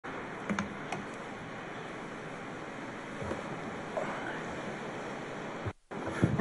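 Steady, even background noise of a large hall with a seated audience, with a few faint clicks, cutting off abruptly near the end.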